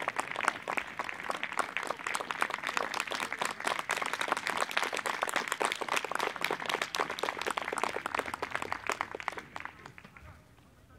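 Audience applauding: a dense patter of many hands clapping, which dies away at the end.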